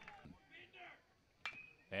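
Quiet ballpark sound, then about one and a half seconds in a metal college baseball bat strikes a pitch with a sharp crack and a brief ringing ping.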